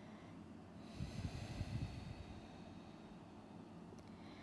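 A person breathing out audibly, starting about a second in and lasting a second or two, then fading.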